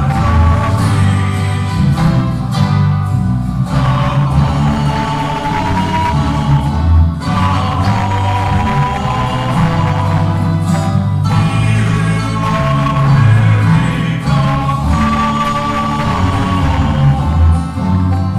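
A small acoustic string band playing a gospel song, several men's voices singing together over acoustic guitars, continuing without a break.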